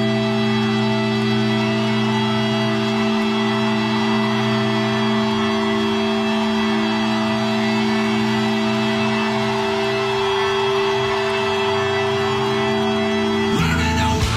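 A live rock band holding one sustained, droning chord, organ-like in tone, that rings steadily; about half a second before the end the full band crashes in with drums and distorted guitars.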